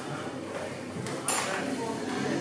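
Indistinct voices murmuring in an enclosed corridor, with a brief sharp clink a little past halfway.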